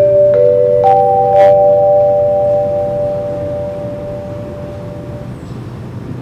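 Singapore MRT station public-address chime: four bell-like notes sounded in turn, low, high, middle, then highest, ringing together and fading out over about five seconds. This is the signal that a recorded announcement is about to follow. A steady low hum runs underneath.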